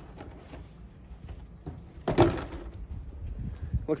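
A plastic sap barrel being handled in a plastic sled, with one loud hollow knock about two seconds in and a smaller knock near the end.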